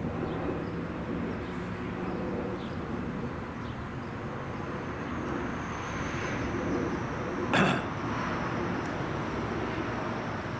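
Outdoor ambience: a steady hum of distant traffic with faint bird calls, and a thin high steady tone through the second half. One short, sharp sound stands out about three-quarters of the way through.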